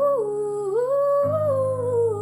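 A young woman singing one long, drawn-out vocal line with the pitch gliding up and down, over soft piano backing. The piano shifts to a new, lower chord just past halfway.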